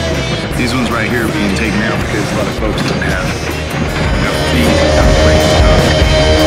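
Heavy rock music with a voice over it during the first half; held guitar notes carry the second half.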